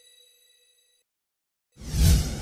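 Logo sound effects: a bell-like chime rings out and fades away over the first second, then after a short silence a sudden loud hit with a deep low end comes in near the end.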